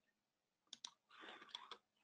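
Near silence: faint room tone with a few faint clicks. Two come close together about three-quarters of a second in, and a soft patch of noise with a few more clicks follows shortly before the end.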